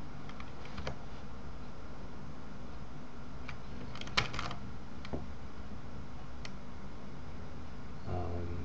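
Scattered clicks of a computer keyboard and mouse over a steady low hum. A quick cluster of keystrokes about halfway through is the loudest.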